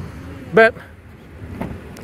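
One spoken word, then low, steady outdoor background noise with nothing distinct in it.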